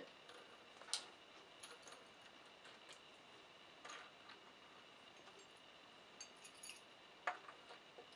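Faint metallic clicks and key jingles as a key is worked in the door lock's cylinder and the reversible lever handle is slid off; the sharpest click comes near the end.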